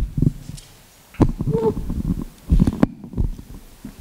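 Handling noise on a table microphone: irregular low thumps and rumbles with a few sharper knocks, in three clusters about a second apart, as the microphone is moved and papers are shifted beside it.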